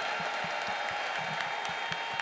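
Congregation applauding: many hands clapping in a steady, even patter.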